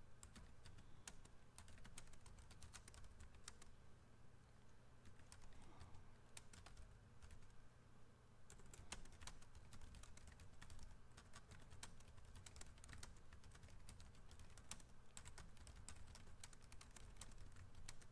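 Faint typing on a computer keyboard: a long run of irregular keystrokes.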